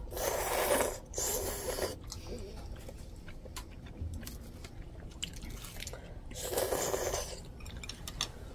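Udon noodles slurped from a bowl: two slurps in the first two seconds and a third about six and a half seconds in. Chewing and light clicks come between them.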